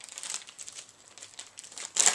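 Plastic soft-bait bag (a packet of Zoom Horny Toads) being handled, crinkling in a run of irregular small crackles.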